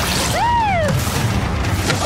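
Animated-film trailer soundtrack: loud music layered with booming sound effects, and a short pitched cry that rises and falls about half a second in.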